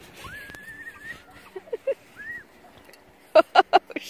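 High-pitched voices: a drawn-out, gliding squeal near the start and a shorter call in the middle, then four short, loud cries in quick succession near the end.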